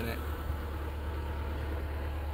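Cat mini excavator's diesel engine idling steadily, a constant low hum.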